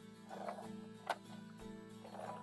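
Scotch ATG adhesive applicator gun laying tape onto cardstock: a short scratchy rasp about half a second in and a sharp click about a second in, over soft background music.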